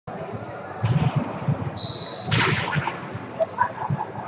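Volleyballs being hit and bouncing on a hard gym court, a run of sharp echoing smacks, with players' voices and a brief high squeak about two seconds in.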